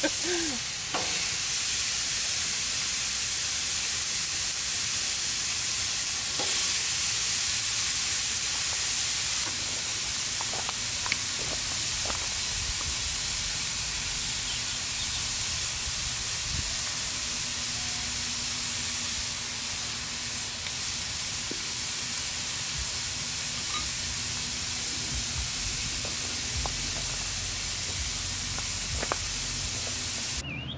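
Hamburger patties searing on a hot Blackstone flat-top griddle, a steady sizzling hiss, with a few faint clicks.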